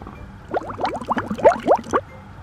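Hydrogen peroxide glugging out of a bottle into a measuring cup: a quick run of gurgles, each rising in pitch, starting about half a second in.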